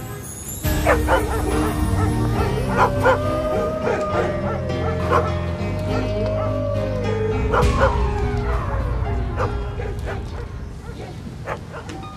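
Film score music: sustained low bass notes under a wavering, sliding high melodic line that ends in a long downward glide, with a few sharp percussive strikes.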